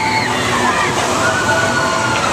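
Orbiter carnival ride spinning, with a loud steady rush of noise and riders' long high screams: one fades just after the start, another rises about a second in and is held for nearly a second.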